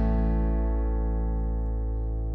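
Background music: a single held chord ringing on and slowly fading.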